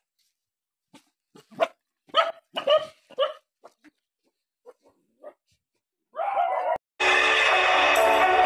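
Dogs barking: about a dozen short barks in quick runs, thinning out after about three seconds. Louder music comes in near the end.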